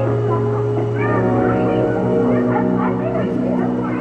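A steady low drone plays over an arena PA, with short high-pitched cries scattered on top of it.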